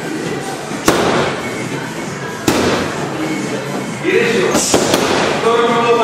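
Punches landing on focus mitts: three sharp smacks one to two seconds apart, each with a short echo. A voice calls out near the end.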